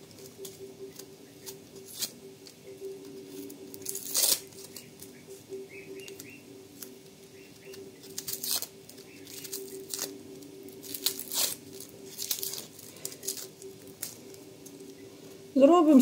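An onion being peeled by hand with a small knife: scattered dry crackles, tears and scrapes of its papery skin, over a steady low hum.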